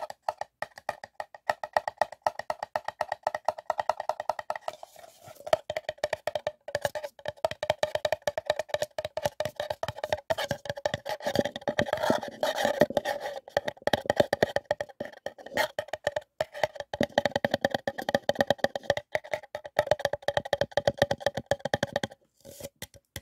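Paper cup tapped rapidly with fingertips: a fast, unbroken run of light hollow knocks, each with a short ring from the cup.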